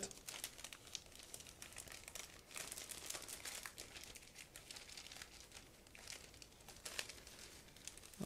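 Clear plastic bag being opened and handled, crinkling softly in a run of small crackles, with a slightly louder crackle about seven seconds in.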